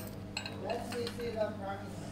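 A person's voice speaking briefly over a steady low electrical hum, with a light metallic click near the start as small metal parts are handled.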